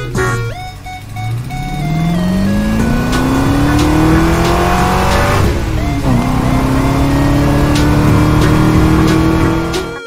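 Car engine accelerating, its pitch climbing steadily, dropping sharply at a gear change about six seconds in, then climbing again; music plays underneath.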